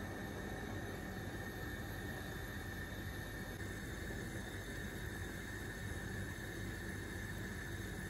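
Dried apricots boiling in a pot of water on a gas stove: a steady, even bubbling noise.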